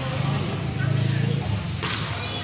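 A volleyball struck by a hand: one sharp slap near the end, over a low murmur of voices.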